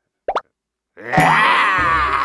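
A short cartoon plop, then about a second in a sudden loud scare sound effect with wavering tones over a low bass, for a zombie shark springing out.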